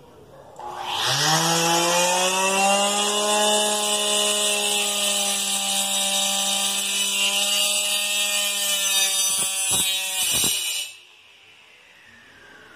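Homemade saw driven by a hair-dryer motor with a small cutting disc switching on about a second in: its whine rises quickly to a steady high pitch and runs very noisily. Near the end the pitch wavers and dips a few times as the disc cuts into a pencil, then the motor cuts off suddenly.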